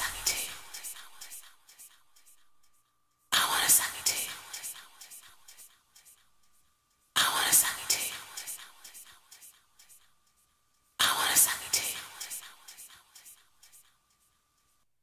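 Beatless outro of a 1990s house remix: a short breathy vocal sample repeats four times, about every four seconds, each time trailing off in echo. A faint high tone holds between the repeats.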